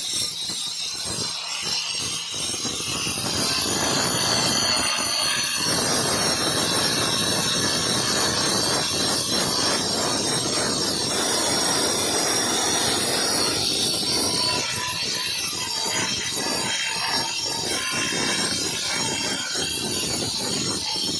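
Handheld angle grinder running with its disc pressed against the edge of a granite stair tread, grinding the molded edge profile: a continuous high-pitched grinding screech. The grinding is heavier from about four seconds in until about thirteen seconds, then lighter and more uneven.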